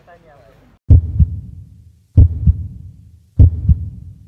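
A heartbeat sound effect: loud, low double thumps (lub-dub) that begin about a second in and repeat evenly about every second and a quarter, three times.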